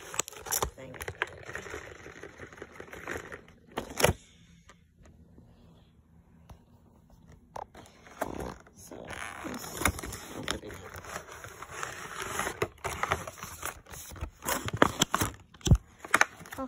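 A cardboard product box being opened and handled: flaps and packaging scraping, crinkling and rustling, with sharp clicks and knocks. There is one loud knock about four seconds in and a quieter pause before the handling picks up again.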